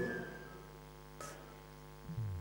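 Steady electrical mains hum from a microphone and sound system, with the tail of the last spoken word dying away in the room's echo at the start and one brief faint noise just over a second in.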